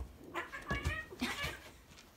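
Two cats play-fighting, with short yowling cries from one of them.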